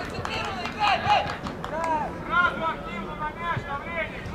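Several voices shouting and calling out at a youth football match, with short unintelligible calls rising and falling in pitch. A few sharp knocks come among them.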